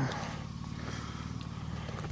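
A small motor vehicle's engine running steadily at low revs, a low, even hum with a fine rapid pulse.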